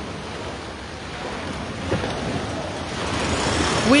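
Small waves washing up onto a sand-and-pebble beach, a steady rushing hiss that grows louder over the last couple of seconds, with a brief knock about two seconds in.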